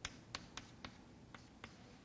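Chalk on a blackboard, drawing short bond lines: about six sharp, faint taps at uneven intervals as the chalk strikes and strokes the board.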